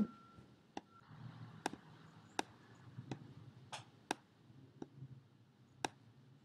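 Computer mouse clicking about eight times at irregular intervals, quietly, as an on-screen arrow is picked up, moved and turned.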